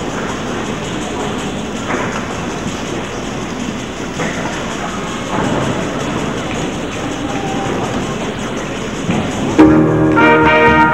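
Steady murmur and rustle of a crowded school gymnasium, with a few faint knocks. Near the end a school concert band comes in suddenly and loudly with a sustained brass chord.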